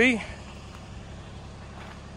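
Kubota's engine running with a steady low hum.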